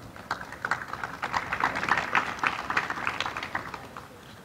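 An audience applauding with scattered hand claps that thicken through the middle and thin out near the end.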